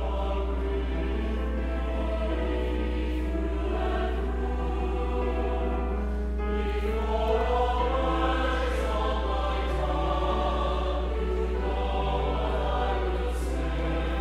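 Mixed church choir of men's and women's voices singing in harmony, with slow, held notes, over a steady low hum.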